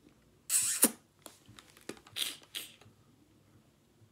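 Handling noises close to the microphone: a loud burst of rustling about half a second in, ending in a sharp click, a few lighter clicks, then two more rustles a little after two seconds.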